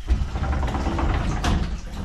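Hot-spring water pouring from a spout into a tiled bath, a loud steady rush, with a sharp click about a second and a half in.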